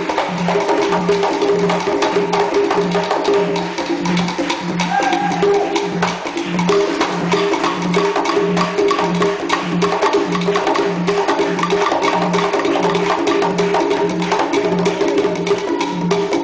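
Conga drums played by hand in a rumba columbia rhythm: sharp slaps and clicks over a low drum tone that repeats about twice a second.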